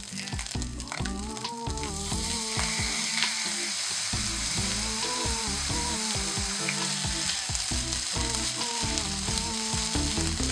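Egg and lettuce fried rice sizzling steadily in a nonstick frying pan, the hiss growing a little stronger a couple of seconds in. A pop song plays underneath.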